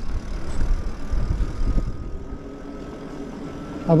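Riding noise from a Lyric Graffiti e-bike on a paved path: wind rumbling on the microphone, heaviest in the first two seconds, with a faint steady whine from the electric motor that rises slightly in pitch.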